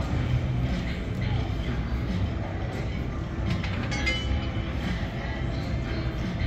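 Roulette ball rolling around the track of an automated dealerless roulette wheel during the spin, a steady rumble, with casino background din behind it.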